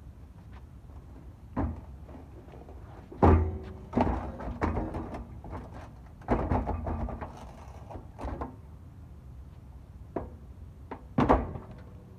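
A 50-gallon water heater being walked and tipped into the back of an SUV: an irregular series of metal thumps, knocks and scrapes against the vehicle, the loudest bang about three seconds in and another near the end.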